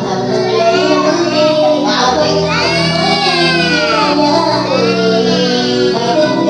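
A voice singing into a handheld microphone over a karaoke backing track, with long held notes that slide in pitch.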